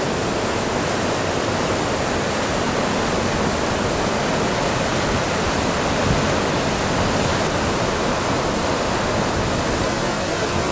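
Steady rushing of ocean surf, waves breaking and washing in an unbroken roar of white noise.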